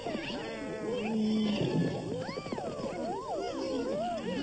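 Cartoon soundtrack of wordless character voices: several gliding, rising-and-falling exclamations over background music.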